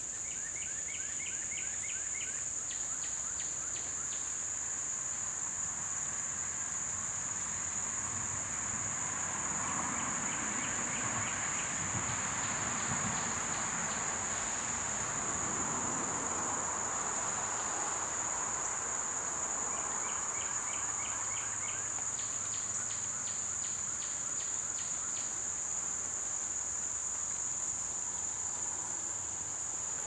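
Outdoor insect chorus: a steady high-pitched drone, joined every so often by runs of rapid, evenly spaced chirps lasting a second or two. A soft, broad rushing sound swells and fades through the middle.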